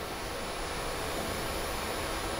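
Steady, even background noise of a tournament hall, with no ball strikes.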